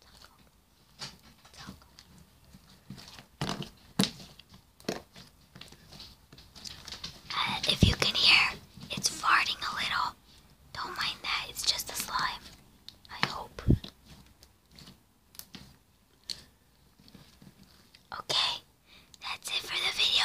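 Sticky slime being squeezed and rolled between hands, giving scattered wet clicks and squelches.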